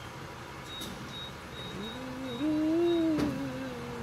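A woman humming a long closed-mouth "mmm" about halfway through, rising a little in pitch and then holding.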